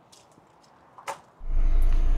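A single short click about a second in, then a steady low hum that starts abruptly.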